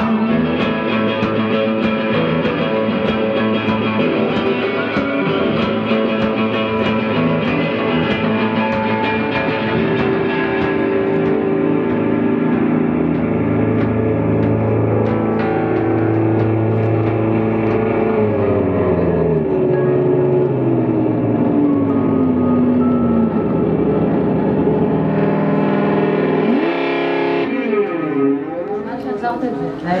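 Live performance of the end of a rock song: a woman singing over guitar played through distortion and effects pedals, then a long held note sliding slowly down in pitch and a wavering, warbling effect sound near the end.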